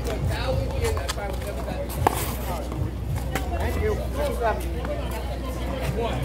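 Sharp smacks of a small rubber handball being struck, a few separate hits, the loudest about two seconds in, over indistinct chatter of voices.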